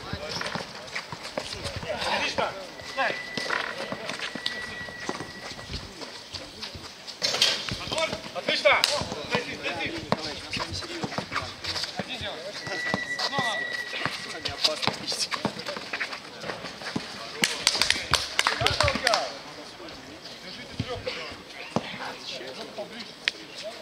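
A basketball being dribbled and bounced in a streetball game: repeated sharp bounces mixed with players' running footsteps and shouted voices.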